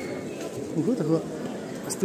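Low, indistinct talk among a small group of people standing close together.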